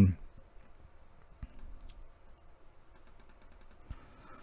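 Faint computer clicking while a channel number is entered in radio programming software: a few scattered light ticks, then a rapid run of about ten ticks a second near three seconds in.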